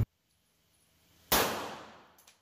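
A single shot from a Rock Island Armory Rock Ultra compact 1911 pistol in 9mm, coming about a second and a half in. It is sharp and sudden, and its echo in the enclosed range dies away over most of a second.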